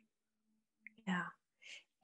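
Only speech: a soft, breathy "yeah" from a woman about a second in, with dead silence around it.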